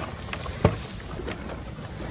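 Low rumble of wind on the microphone, with a few light clicks and rustles and one sharper click just over half a second in.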